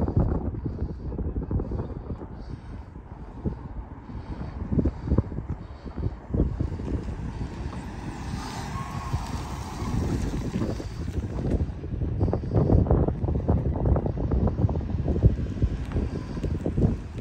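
Wind buffeting the microphone in irregular gusts, under a Ford Transit van's engine as it drives slowly toward and past, louder over the last few seconds.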